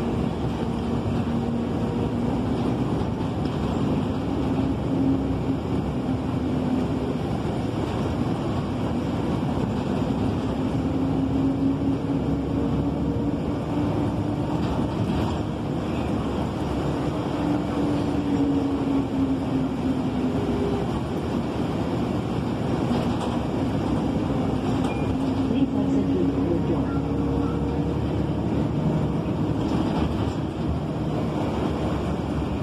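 MTA S79 city bus driving, heard from inside the cabin: steady engine and road noise with a droning tone that slowly rises and falls as the bus speeds up and slows.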